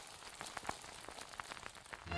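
Faint patter of light rain, a scattered run of small ticks.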